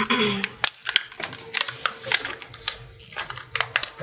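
Irregular sharp clicks and snaps of hard clear plastic packaging being handled and pried at while trying to get a roll of washi tape out of it.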